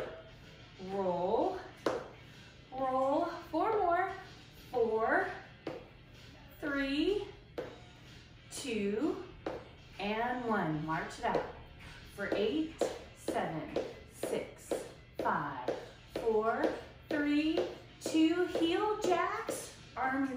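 A woman talking in short phrases throughout, with music in the background.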